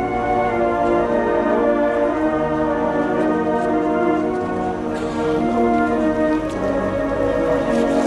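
Brass orchestra playing slow funeral music in long sustained chords.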